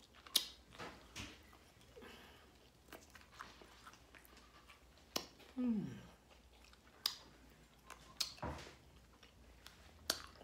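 A person biting and chewing fried pork chop close to the microphone, with wet mouth clicks and smacks scattered through. About halfway through there is a brief falling 'mm' from the eater.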